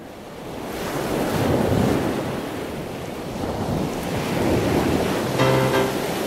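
Ocean surf washing onto a beach, fading in and swelling to a steady wash. Music with repeated chords comes in over it about five and a half seconds in.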